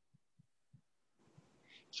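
Near silence: room tone, with a few faint, short low thuds scattered through it and a soft hiss just before the end.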